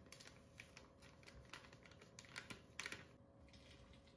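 Faint crinkles and clicks of a paper packet being handled as dry cake mix is poured from it into a glass bowl, with a slightly louder cluster of rustles near the end.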